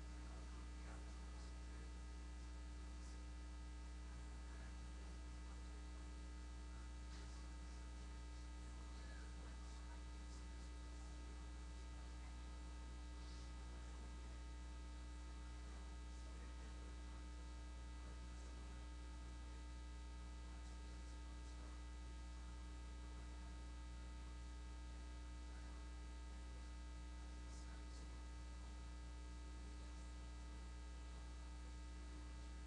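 Steady electrical mains hum from the sound system, with a low buzz and faint scattered specks of sound over it, unchanged throughout.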